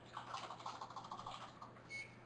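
Faint typing on a computer keyboard: a quick run of keystrokes.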